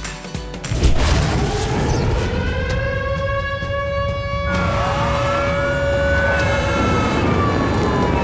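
Fire engine sirens wailing over a steady low rumble. Several rising and falling tones overlap as more than one truck arrives.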